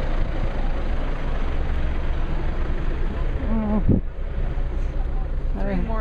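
Steady rumble of an off-road vehicle's engine running, mixed with wind noise on the microphone.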